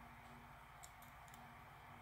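Near silence with a few faint, short clicks about a second in, from a laptop being clicked through its settings.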